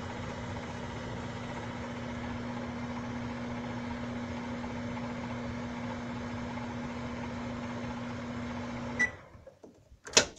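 Microwave oven running while heating a mug of water: a steady electrical hum with fan noise. It cuts off suddenly with a click about nine seconds in.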